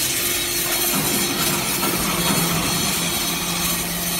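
Vertical hydraulic briquetting press for cast iron chips running: a steady pump and motor hum under loud hiss, the hum shifting to a lower tone about a second in.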